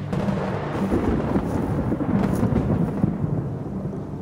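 Loud thunder rolling from a storm overhead, swelling about a second in and easing near the end.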